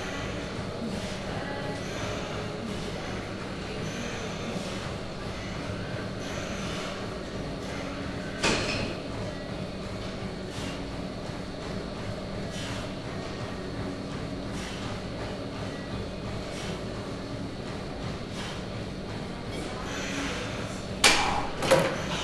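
Seated cable row machine in use: the weight stack knocks softly about every two seconds with the reps over a steady gym hum. There is a louder clank about eight seconds in and two loud clanks close together near the end.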